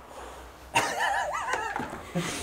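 A man's high-pitched, wavering laugh, starting about a second in and lasting about a second.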